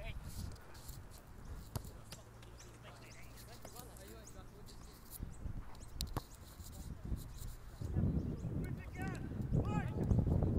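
Faint, distant shouts and calls from footballers during a training game, with a few sharp thuds of a football being kicked.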